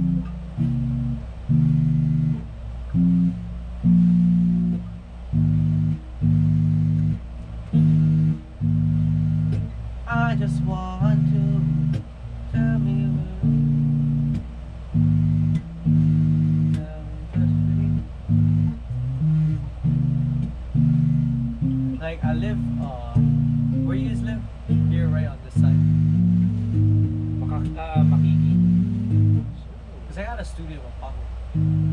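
Electric bass and electric guitar jamming: a line of held low notes that change every second or so, with short breaks between phrases, over a steady low amplifier hum.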